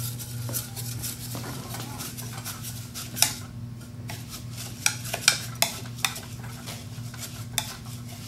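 White plastic spatula stirring an oat, brown sugar and melted margarine mixture in a Pyrex glass measuring cup: a grainy scraping with a few sharp taps of the spatula against the glass, the loudest about three seconds in and around five to six seconds. A steady low hum runs underneath.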